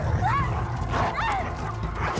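Dogs yelping and whining in several short, arching cries over a low, steady drone of film score.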